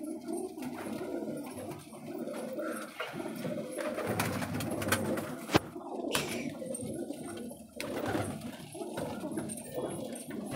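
A flock of domestic pigeons cooing continuously, many calls overlapping. There is one sharp click a little past halfway.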